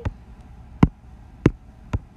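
Four sharp taps of a drawing pen on a tablet or touchscreen, spaced about half a second apart and unevenly.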